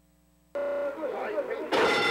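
Track sound cuts in about a quarter of the way in with faint voices. Near the end the horse-race starting gate's electric bell starts ringing loudly as the gates spring open.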